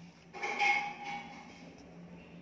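Cardboard rubbing and scraping as a corrugated cardboard lid is slid and pressed onto a small cardboard box, starting about a third of a second in and fading within a second, over a low steady hum.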